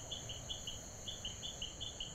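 Crickets chirping faintly: a run of short high chirps about five or six a second, over a steady high-pitched trill.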